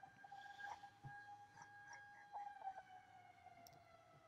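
Faint air-raid siren on a TV show's soundtrack: one long steady wail that slowly sinks in pitch toward the end.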